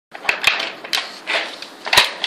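Wooden dog puzzle board clacking as a dog pushes its sliding wooden blocks around, about five sharp wooden knocks in two seconds.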